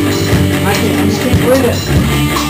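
Punk rock band playing live: electric guitars, bass and drum kit at full volume, with a vocal over it.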